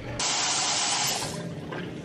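Bathroom sink tap running with water splashing into the basin, as a toothbrush is wetted for brushing. It starts suddenly, runs for about a second and then drops away.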